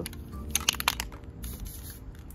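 Rust-Oleum aerosol spray paint can being shaken, its mixing ball clicking a few times in quick succession, then a short hiss of spray near the end. This is the test spray into the air that clears the clumpy first bursts.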